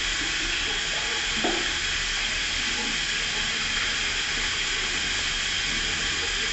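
Restroom sink faucet running steadily, with water falling onto hands being washed under it.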